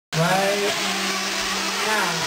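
Small two-stroke nitro engines of 1/8-scale RC truggies running, a steady high buzz with a held pitch under a broad hiss.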